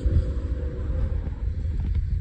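Wind buffeting the microphone, heard as a low, uneven rumble.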